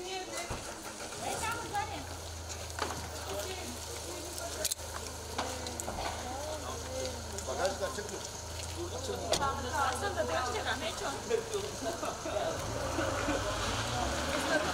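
People's voices talking, over a steady low hum, with a few sharp clicks.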